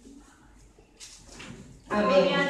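A lull in a hall with faint, indistinct voices and a brief rustle about a second in. A loud voice starts speaking just before the end.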